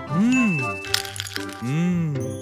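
A cartoon character's thoughtful 'hmm' sounds over light background music: two rising-then-falling hums, with a sharp crack sound effect about a second in.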